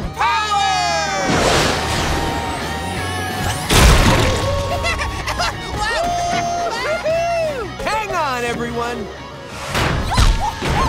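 Cartoon action music with characters' wordless shouts and whoops over it, and a loud crash about four seconds in.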